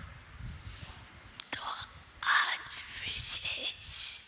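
A woman's voice speaking in a breathy, whisper-like way, starting about halfway through, after a quieter opening with a single click.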